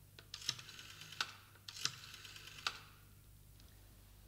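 A few light, sharp knocks and clicks, four or five of them about two-thirds of a second apart, faint over room hiss.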